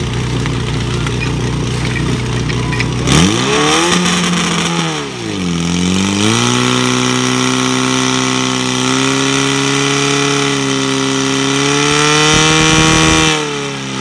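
Portable fire pump engine idling, then revved hard about three seconds in. It dips briefly around five seconds and climbs back to a high, steady run, pumping water out through the hose lines.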